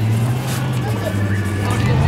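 An engine running steadily at low revs, a low hum that shifts slightly in pitch near the end, with faint voices of people around.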